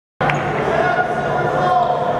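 Crowd chatter and voices echoing in a basketball gym, with a basketball bouncing on the hardwood court and one sharp knock just after the sound comes in.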